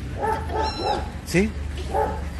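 Several short, high-pitched animal cries in quick succession in the first second, over a low steady hum.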